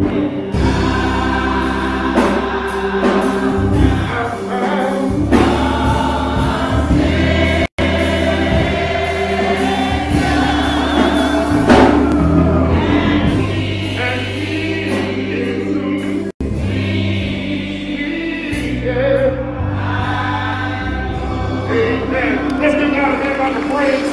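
Gospel choir singing with instrumental accompaniment and a steady, shifting bass line. The sound cuts out for an instant twice.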